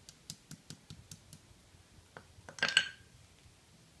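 Small hammer tapping and chipping at broken plaster of Paris mould pieces on concrete: a quick run of light taps about five a second, then a louder clatter of strikes just before three seconds in.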